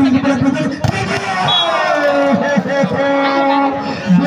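A man's voice, with some syllables drawn out into long held notes, over crowd noise at a match.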